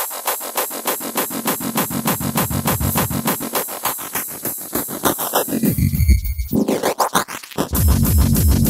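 Intro of a frenchcore (fast electronic hardcore) track: a fast, even run of synthesized hits with a low bass filling in, breaking off about six seconds in into sweeping glides and a short drop-out.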